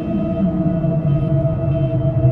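Ambient meditation music: a steady 639 Hz tone held over a low drone that slowly sinks in pitch.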